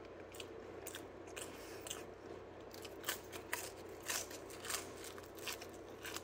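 Close-up chewing and biting of crisp Domino's thin-crust pizza: irregular crunches, coming thicker from about halfway.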